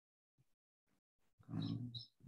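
Near silence, then near the end a short, low voiced sound from a man, a drawn-out hesitation 'ah' or grunt rather than words.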